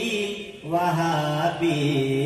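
A man's solo voice singing a naat in Urdu, holding long, drawn-out notes that step between pitches, with a short breath about half a second in.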